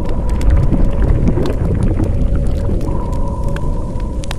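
Sound effect for an animated logo reveal: a deep rumble with scattered crackles like breaking or burning material, over a faint steady hum, beginning to fade near the end.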